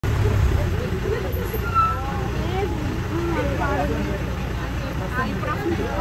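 Steady low rumble of a safari bus engine running at idle, under the chatter of several passengers' voices.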